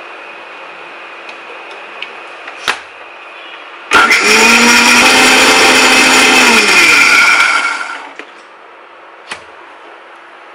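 Electric mixer grinder with a steel jar blending a smoothie: the motor switches on about four seconds in, runs loud and steady for about three seconds, then winds down with a falling pitch. A short knock comes before it starts and another after it stops.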